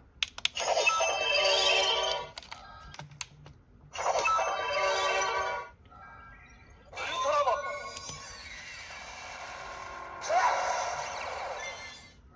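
Bandai CSM Orb Ring toy playing its electronic sound effects through its built-in speaker as its ring lights up. A few button clicks come first, then two short bursts of effect sound. About seven seconds in, a longer effect begins with gliding pitches and lasts to near the end.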